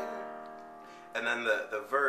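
Chord on a Casio digital piano ringing out and fading. A voice comes in about a second in.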